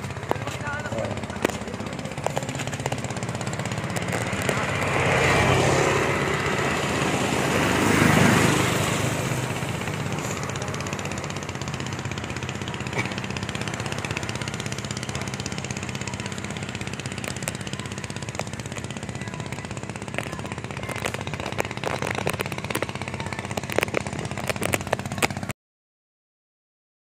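Outdoor road ambience with a steady low hum and a motor vehicle passing, louder about five to nine seconds in, with scattered sharp clicks; the sound cuts off suddenly just before the end.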